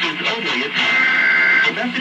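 Television audio of the Emergency Alert System test: an announcer's voice reading the test message with music playing underneath, and a steady high tone held for about a second in the middle.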